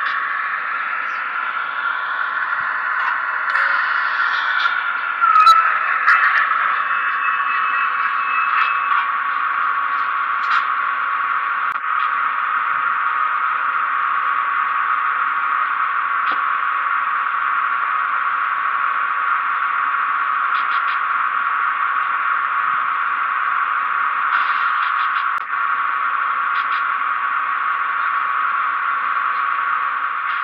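Econami DCC sound decoder in an HO scale box cab electric model locomotive, playing a steady electric-locomotive running sound through its small onboard speaker. It is a constant hissing hum with one fixed tone, and a few brief clicks now and then.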